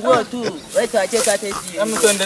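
Men's voices, with a high hissing noise joining from a little over half a second in.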